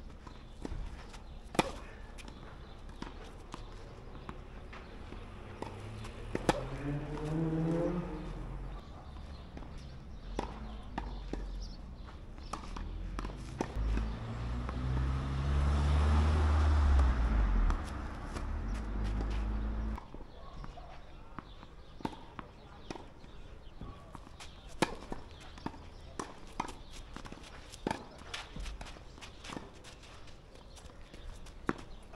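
Tennis balls struck by racquets and bouncing on a clay court during a warm-up rally: sharp pops every second or two. In the middle a louder low rumble with shifting tones builds up and cuts off suddenly about two-thirds of the way through.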